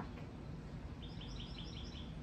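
A songbird singing a quick run of about six short, high chirps, starting about a second in, over faint steady outdoor background noise.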